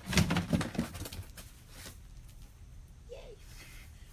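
A dog leaping up and hitting a person in the stomach: a sudden heavy thump at the start, followed by about a second and a half of scuffling and clicks as it lands.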